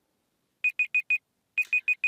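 Countdown timer alarm sounding as the answer time runs out: four quick high-pitched beeps about half a second in, then after a short gap a second run of the same beeps near the end.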